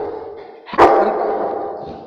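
Labrador retriever barking once, a sharp bark about three-quarters of a second in that rings on in a tiled hallway. The tail of an earlier bark fades at the start.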